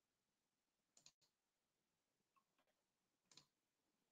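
Near silence: room tone with two faint clicks, one about a second in and one near the end.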